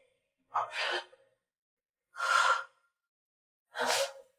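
A woman's heavy, breathy exhalations, three of them, each about half a second long and about a second and a half apart.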